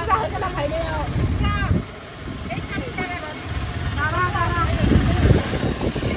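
Low rumble of a vehicle's engine and road noise heard from inside a moving vehicle in traffic, swelling a little past the halfway point, with voices talking at times.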